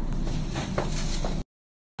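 Steady background noise of a room, an even hiss-like haze with a couple of faint brief sounds. It cuts off to complete silence about one and a half seconds in.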